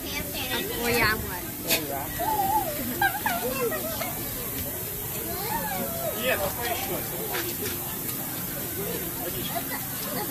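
Water mist nozzles spraying, a steady hiss.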